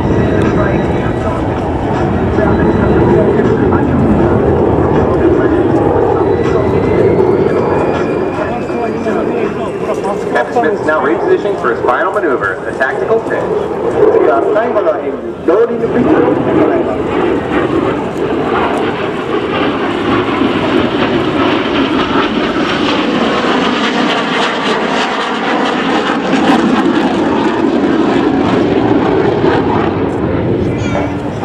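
Continuous loud jet noise from an F-16 fighter's General Electric F110 turbofan as the jet manoeuvres overhead. A faint rising whine runs through the first several seconds, and the level dips briefly about fifteen seconds in.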